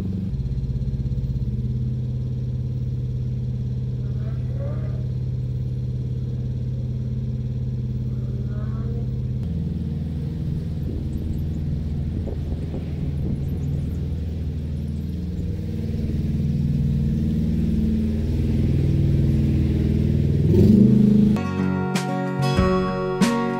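Narrowboat's inboard diesel engine running steadily while cruising. Its note shifts about halfway through, and the revs rise briefly near the end.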